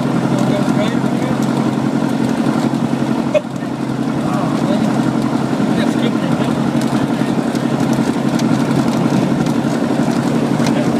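Van's RV-6's piston engine running steadily at low power with the propeller turning, heard from inside the cockpit as the plane rolls along a grass strip after landing. A short click and a brief drop in level come a little over three seconds in.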